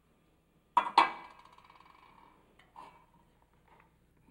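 A metal cooking pot clanking twice in quick succession against the stove, about a second in, with a metallic ring that dies away over a second or so; a lighter clank follows near the end.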